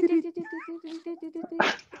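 A person's voice making rapid staccato sounds on one held pitch, about nine pulses a second, like giggling. It ends in a sharp breathy burst, followed by laughter.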